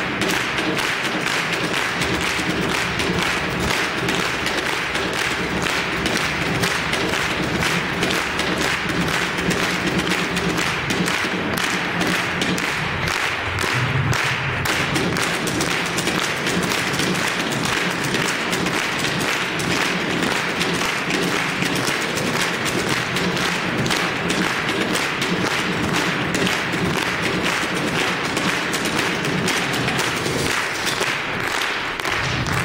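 Percussion played on a refrigerator: sticks, utensils and hands beating a dense, driving rhythm of thuds and taps on its metal cabinet and doors.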